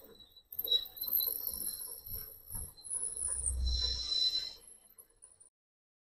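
Myford Super 7 lathe running, its boring tool cutting inside the bore of a pulley to machine out an old bush, with a thin, wavering high-pitched squeal that drifts lower. A heavier rumble builds a little after three seconds in, and everything cuts off abruptly near the end.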